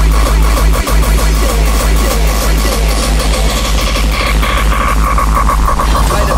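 Uptempo hardcore electronic track with no vocals: a fast, pounding kick-drum beat over a constant heavy bass and a held synth note. Through the second half the treble is filtered down in a falling sweep.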